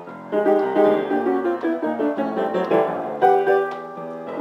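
Jazz piano playing a bossa nova tune: struck chords and a run of single notes, with a firmly struck chord a little past three seconds in.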